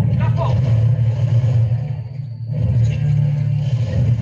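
Film soundtrack of a mounted buffalo hunt: a loud, steady low rumble with short shouted voices at the start and again about three seconds in.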